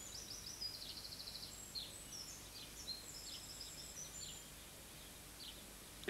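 Faint birdsong: a continuous run of high, varied chirps with a fast trill about a second in, over a faint steady background hiss.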